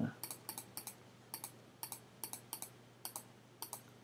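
Light, sharp computer clicks, about ten of them, mostly in quick pairs and irregularly spaced. They come from the mouse or pen being pressed and released as a scattered round brush is dabbed again and again onto a digital canvas.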